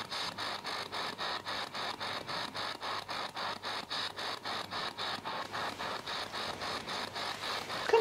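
Spirit box scanning through radio stations: an even, rapid chatter of short static pulses, about seven a second.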